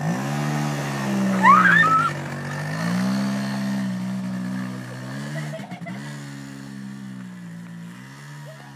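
Quad bike engine pulling away, its pitch rising twice as it speeds up, then holding steady and fading as it moves off. A brief high rising squeal about a second and a half in is the loudest moment.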